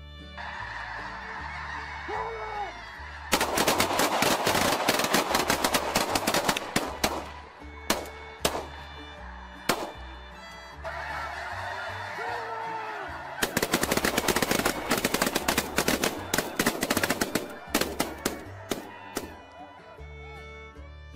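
A huge flock of snow geese calling overhead, broken by two volleys of rapid shotgun fire from several hunters shooting at once. The first volley starts about three seconds in and the second around thirteen seconds, each followed by scattered single shots. Background music with a steady bass line runs underneath.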